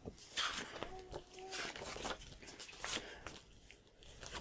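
Soft rustling and scuffing of a thin paperback picture book's paper pages as it is handled and opened, in several short separate rustles. A brief faint tone sounds about a second in.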